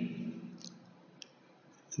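A pause in a man's talk: the tail of his voice fades out in the room, then two faint, short clicks about half a second apart, then near silence.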